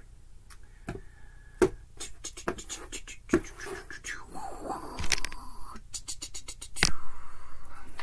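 A tarot deck being shuffled by hand, the cards clicking and slapping together in scattered strokes with short scraping runs, then a quick rapid patter of cards near the end.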